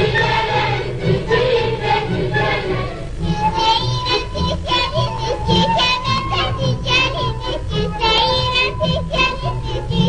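Azerbaijani children's folk song: a group of children sings with instrumental accompaniment, and about three seconds in a single girl's voice takes over the melody.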